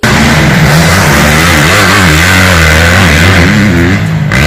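Motocross dirt bike engine running loud, its revs rising and falling over and over as the rider works the throttle, cutting in and out suddenly.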